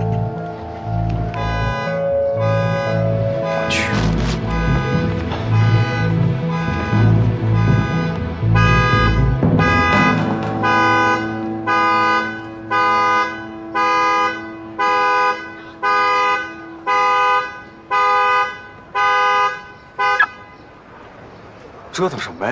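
Background music, then a car horn sounding in alarm about once a second, ten honks in a row, set off remotely from an Audi key fob to find the parked car.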